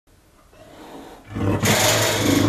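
A Far Eastern leopard growling, a rough, loud growl that sets in about halfway through: a mother guarding her newborn cubs, warning off people at her enclosure.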